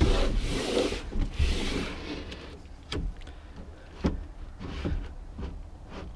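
A large floor panel being slid and scraped into the cargo floor of a van, then knocking a few times as it is set down into place.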